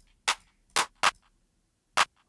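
Trap clap samples auditioned one after another in a drum-kit browser: four short, sharp electronic handclaps, each a different sample, spaced irregularly with silence between.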